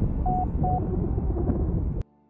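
Wind rushing over the camera microphone in paragliding flight, a steady low rumble. Two short beeps of the same pitch from the flight variometer come about a quarter and three-quarters of a second in. The sound cuts off abruptly at the end.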